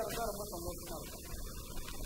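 Steady electrical mains hum on the microphone recording, with a man's voice speaking briefly near the start.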